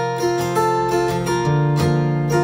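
Intro music led by acoustic guitar, steady plucked and strummed notes.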